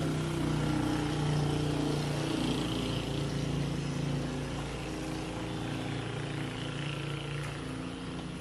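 An engine running steadily in the background, its pitch wavering slightly.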